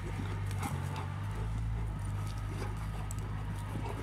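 Cane Corso dogs' paws scrambling and thudding on packed dirt as they run, in scattered short knocks, over a steady low hum.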